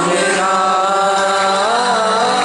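Live concert music: a voice holding long sung notes over the band, the pitch rising near the end.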